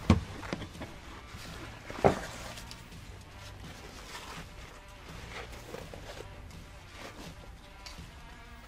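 Handling noise of a nylon binocular harness pack being pulled on over the head and its straps adjusted, with a sharp click just after the start and soft rustling after it.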